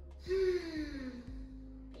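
A woman's long, voiced sigh on the exhale, breathy and falling in pitch over about a second, over background music with steady held notes.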